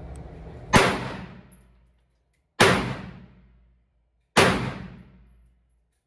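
Three single gunshots from a firearm, fired about 1.8 seconds apart, each followed by about a second of echo off the walls of an indoor range.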